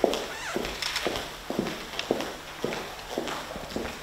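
Footsteps of high heels and leather-soled shoes clicking on a polished marble floor, about two steps a second, each click ringing briefly in the hall.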